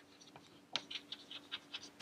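Chalk writing on a chalkboard: a run of short, faint scratches and taps as words are written, a few at first and a quick flurry in the second half.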